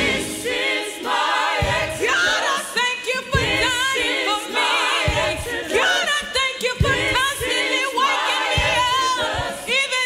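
A church praise team of several voices singing a gospel song together, with a low thump recurring about every second and three-quarters beneath the singing.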